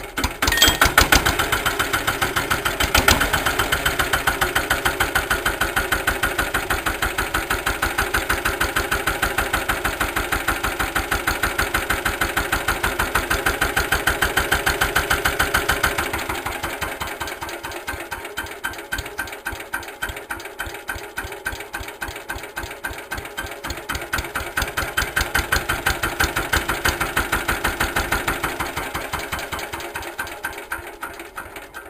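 Lister LT1 single-cylinder air-cooled diesel stationary engine catching right at the start and running at a slow idle, with an even beat of firing pulses. About halfway through it gets noticeably quieter.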